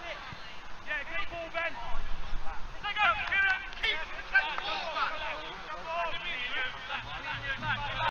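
Indistinct shouts and calls from footballers across an open pitch, no words clear, loudest in the middle of the stretch.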